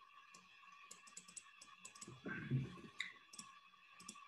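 Faint, quick light clicks of a computer keyboard and mouse in irregular runs, with a brief low sound a little past two seconds in.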